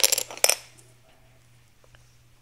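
Dominoes clicking as one is set in place in a template built from Lego bricks: a short cluster of sharp clicks in the first half second.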